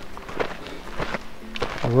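Footsteps on a dirt mountain trail as a hiker walks uphill, a few soft steps, with a short faint tone near the end.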